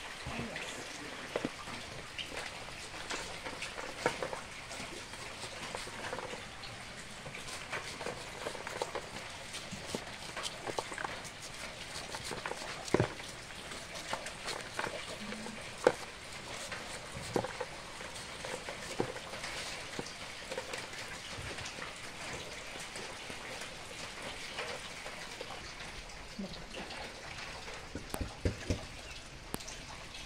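Kitchen knives scraping the kernels off ears of fresh corn, the loose kernels falling into plastic basins as scattered clicks and taps over a steady background hiss.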